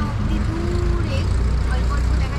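Low, steady rumble of roadside highway traffic that grows heavier a little after a second in, with faint snatches of voices over it.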